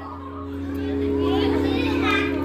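Indistinct voices talking in a hall over a steady instrumental drone held on a few notes, with a low steady hum underneath.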